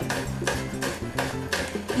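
Chef's knife slicing Thai chilies on a wooden cutting board: quick, even strokes, about four a second, each a sharp tap of the blade on the board. Background music plays underneath.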